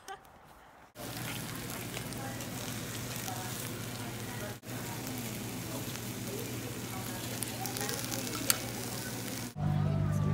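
Rice and fish roe sizzling in a hot Korean stone bowl (dolsot) as a spoon stirs it, a steady crackling hiss with a faint low hum and faint chatter under it. Near the end it cuts to a louder steady hum.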